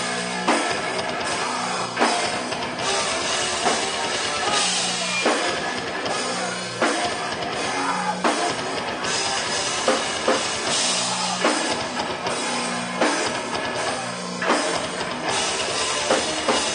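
Heavy metal band playing live: distorted electric guitar and bass guitar over a drum kit, with sharp drum and cymbal accents about every second. No singing is heard.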